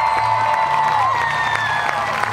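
Stadium crowd cheering and clapping, with one person's long high-pitched shout held for about a second over the applause.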